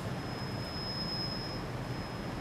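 Low, steady room noise with a faint, thin, high-pitched steady tone that is strongest in the middle.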